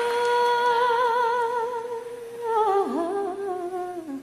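A solo voice humming a wordless, long held note with vibrato, then sliding down through a few lower notes near the end, with little or no accompaniment.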